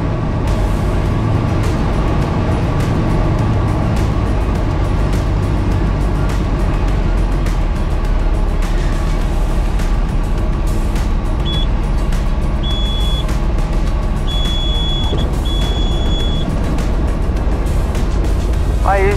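Light aircraft's engine and propeller droning steadily in the cockpit on landing, under background music. Near the end a high warning tone sounds in four short beeps, the last about a second long: the stall warning going off as the plane flares to touch down.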